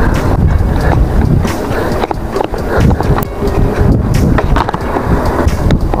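KTM Ultra Ride mountain bike rolling over street and pavement: a loud, steady rumble of tyres and bike on the handlebar-mounted camera, broken by frequent sharp clicks and rattles from bumps.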